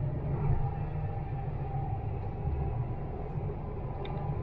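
Dubai Metro electric train running along its elevated track, heard from inside the carriage: a steady low rumble with a faint, even whine above it.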